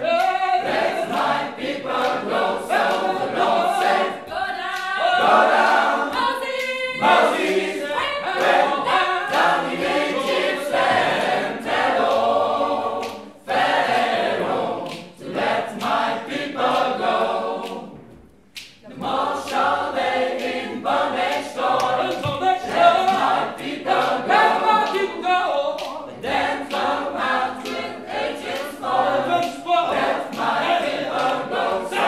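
Mixed choir singing a cappella in a gospel style, with hand claps keeping time. The singing breaks off briefly about eighteen seconds in, then resumes.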